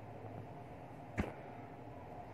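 Faint steady background hum with a single sharp knock or click about a second in.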